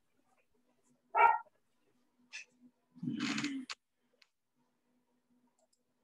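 A dog barking in short calls: one brief bark about a second in and a longer one about three seconds in.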